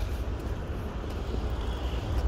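City street noise: a steady low rumble of traffic with wind on the phone's microphone.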